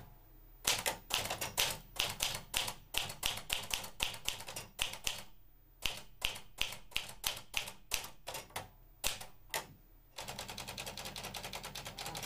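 Manual typewriter typing: irregular key strikes, a few per second, with a short pause about halfway through, then a fast even rattle of clicks for the last two seconds.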